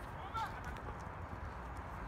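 Wind buffeting the phone's microphone as a steady uneven rumble, with a brief high voice call about half a second in.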